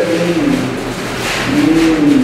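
A man's voice holding drawn-out hesitation sounds between phrases, each a long vowel sliding slowly in pitch, with a faint low rumble underneath.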